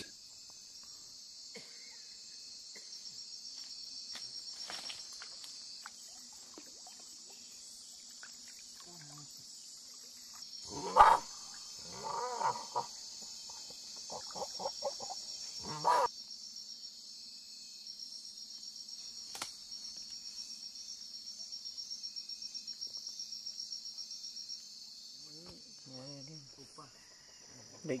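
Night rainforest insect chorus, a steady high buzzing trill that turns into a regular pulsing of about four beats a second in the second half. A few short, louder calls break in around the middle.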